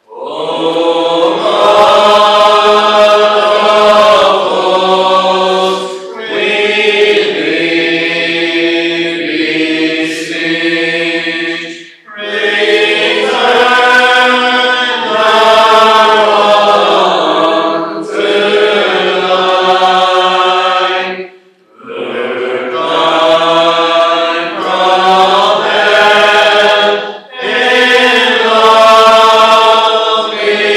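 A congregation singing a psalm together unaccompanied, in long sustained lines with brief pauses between phrases.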